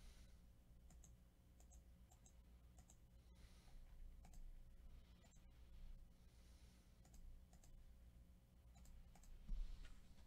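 Near silence with faint, scattered computer mouse clicks over a low steady hum.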